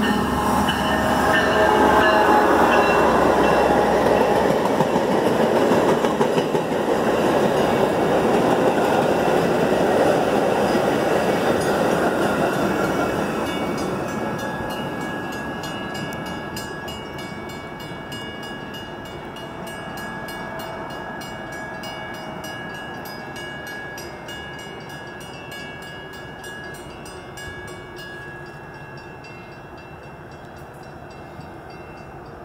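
Metra commuter train, a diesel locomotive hauling bilevel passenger coaches, passing at speed: the rumble and rattle of the locomotive and cars is loudest over the first dozen seconds as it goes by, then fades steadily as the train draws away.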